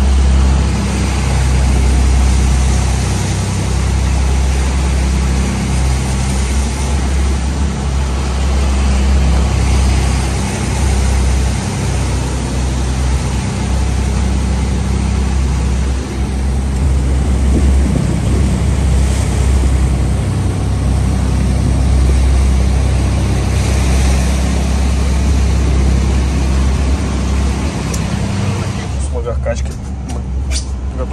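Strong wind and rushing sea spray over a steady low engine drone, heard out on a motor yacht's open deck in heavy weather. The sound cuts off abruptly near the end.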